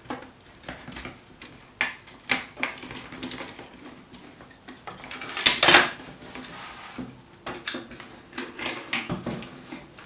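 Cordless drill being taken apart by hand: plastic casing and metal parts clicking and clattering against each other and the wooden workbench. About five and a half seconds in comes a louder, longer rattling scrape.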